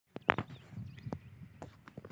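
A few short, scattered clicks and knocks, with faint bird chirps behind them.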